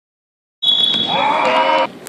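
A basketball referee's whistle gives one steady blast starting about half a second in, overlapped by shouting voices; everything cuts off suddenly just before the end.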